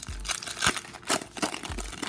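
Shiny wrapper of a hockey card pack torn open and crinkled by hand: a run of sharp crackles, loudest about two-thirds of a second in and again just after a second.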